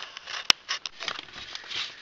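Handling noise of an orange plastic sewer-pipe fitting with a small fan motor mounted inside on a steel strap bracket. There is one sharp click about half a second in, then light scraping and rustling as it is turned over by hand.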